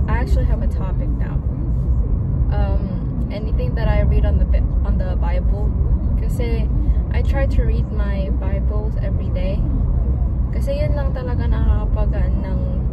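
Steady low road and engine rumble inside a moving car's cabin, with a woman's voice over it for most of the time.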